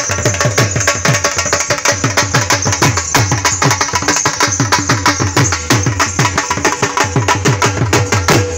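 Dhol drums, double-headed barrel drums beaten with sticks, played in a fast, driving rhythm; the deep bass-head strokes sag in pitch after each hit under a steady rattle of treble strokes.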